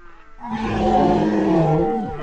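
A person's long, loud, rough-edged yell, beginning about half a second in, falling in pitch and trailing off near the end.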